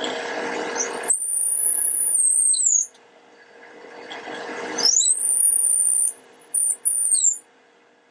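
Long 5/32-inch drill bit, held by hand, boring into a wooden pen blank spinning on a wood lathe: a rough cutting noise that turns into a high-pitched squeal, twice, each time stopping suddenly as the bit is backed out to clear the chips.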